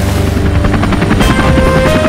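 Helicopter rotor chopping in a rapid, even beat as the rescue helicopter flies overhead, with orchestral score underneath; held music notes come in about a second in.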